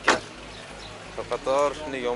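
A Chevrolet Spark's car door is pushed shut with a single sharp thump right at the start. A man's voice follows from about a second in.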